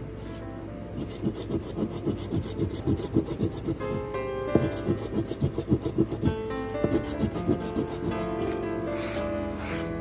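A metal coin scraping the scratch-off coating from a paper lottery ticket in rapid back-and-forth rubbing strokes.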